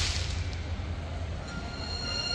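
A show's loud outdoor soundtrack dies away in the first half second, leaving a steady low rumble with faint hiss above it.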